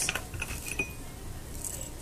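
Small clinks and dry rustling of whole chai spices (cloves, cardamom, cinnamon pieces) being scooped by hand from a ceramic bowl and added to a glass jar, with one short ringing clink a little under a second in.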